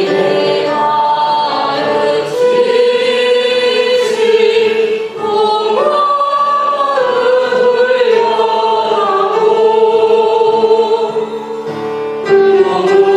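A group of voices singing a slow hymn in long held notes, led by a woman's voice at the microphone, with upright piano accompaniment.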